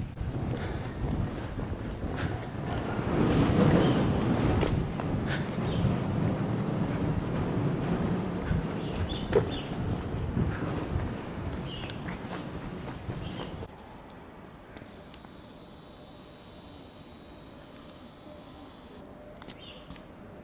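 Wind buffeting the microphone: a rough, low rumbling noise with scattered small knocks. About two-thirds of the way through it cuts off abruptly to a much quieter, steady background hiss.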